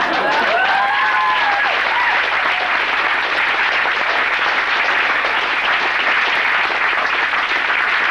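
Concert audience applauding steadily, with a few cheers gliding over the clapping in the first two seconds.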